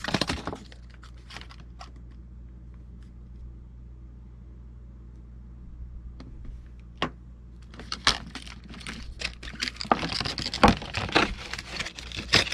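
Stiff clear plastic blister packaging being handled and pried open, crackling and clicking. It starts with a few clicks, goes mostly quiet for several seconds apart from one sharp snap, then crackles densely through the last few seconds.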